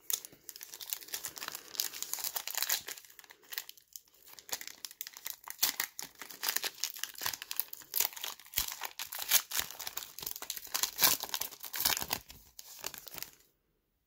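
Foil wrapper of a Panini Mosaic basketball card pack crinkling and tearing as it is worked open by hand, a dense run of crackles that stops about a second before the end.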